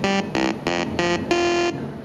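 A melody played by the CSIRAC valve computer's loudspeaker (the 'hooter'): a quick run of short, separate buzzy notes ending on a longer held note that stops shortly before the end. The notes come from raw pulses of the computer's data words sent straight to an amplifier and speaker, with no digital-to-analogue converter.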